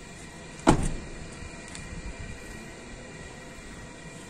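A Mitsubishi Xpander's front door being shut: one solid thump about a second in, then a short low decay.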